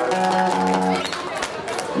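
Acoustic guitar playing: a chord rings out steadily for about a second, then the sound drops to quieter strumming.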